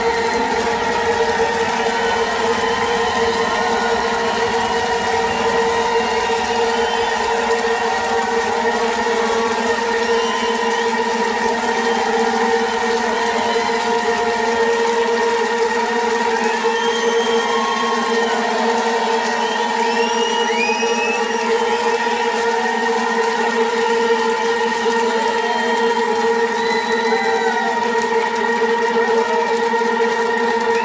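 Live rock band holding a sustained droning chord at the close of a song, with no drums or vocals, and small wavering, gliding tones drifting over it. The bass drops away about halfway through, leaving the higher drone.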